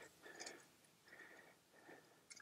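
Near silence, with a few faint, brief sounds.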